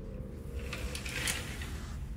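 Soft rustle of sheer linen curtains being brushed aside by hand, strongest about a second in, over a low steady room hum.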